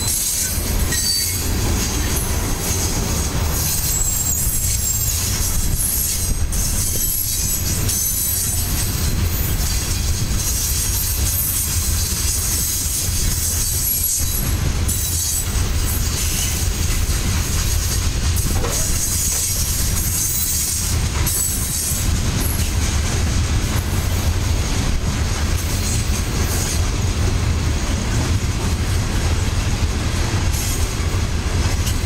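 Coal hopper cars of a freight train rolling past: a steady low rumble of steel wheels on rail, with thin, high wheel squeals coming and going.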